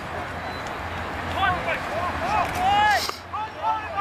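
Rugby players shouting short calls on the field, several voices overlapping, with a brief hissing burst about three seconds in.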